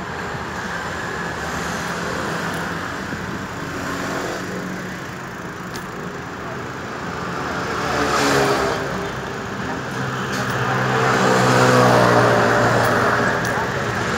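City street traffic: steady road noise with a motor vehicle engine passing close, its pitch sliding and loudest a few seconds before the end.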